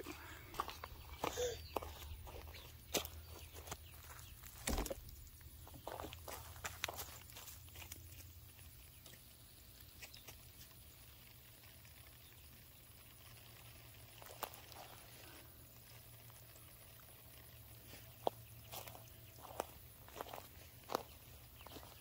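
Faint footsteps on a wood-chip mulch path: scattered steps in the first several seconds, a quiet stretch, then steps again near the end.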